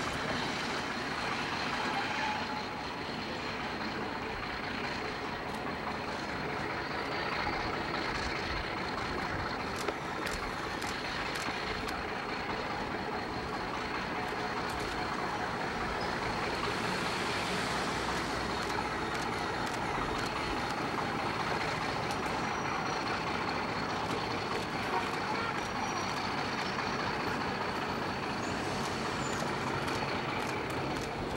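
ALCO RS11 diesel locomotive running steadily as it hauls a short passenger train slowly across a steel truss bridge.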